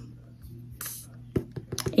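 A short breathy hiss about a second in, then a quick run of light clicks and taps near the end from handling a cardboard box of dryer sheets.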